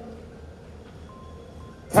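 A pause in amplified speech: the echo of the voice dies away, leaving a faint low hum, and about a second in a faint thin tone is held briefly, broken once, before the voice returns at the end.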